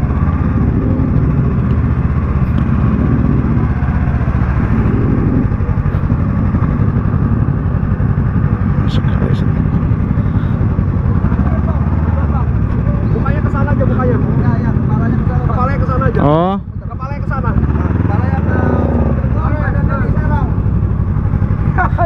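Motorcycle engine running at idle close by, a steady low rumble, with one brief rising sweep in pitch about sixteen seconds in.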